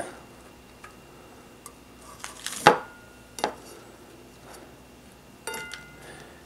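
Hardened pieces of DIY candy being picked up and set down on a plate: scattered light clicks and taps, the loudest about two and a half seconds in, and a short clink with brief ringing near the end.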